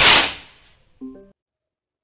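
Firework rocket launching with a sudden loud whoosh that fades over about half a second. A short low tone follows about a second in.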